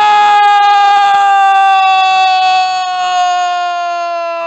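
A man's voice holds one long, loud shouted 'Suuu', a commentator's drawn-out goal call. The note stays steady and sinks slowly in pitch.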